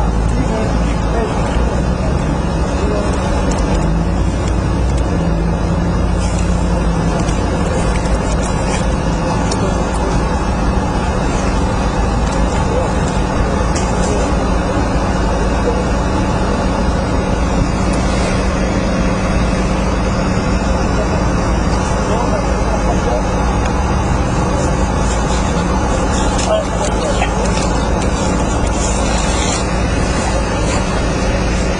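A steady, loud rumbling noise with muffled, indistinct voices in it.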